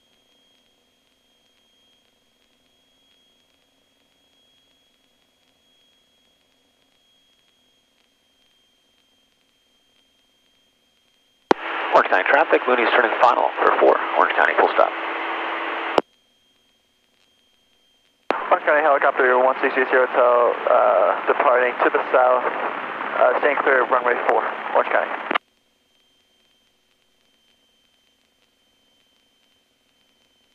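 Two voice transmissions over an aircraft's VHF radio, heard through the headset audio feed. Each starts and cuts off abruptly, the first ending with a click. Between them the feed is nearly silent apart from a faint steady high tone.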